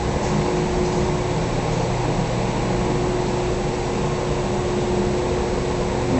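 Steady mechanical drone of a running machine: a constant hum over an even hiss, unchanging throughout.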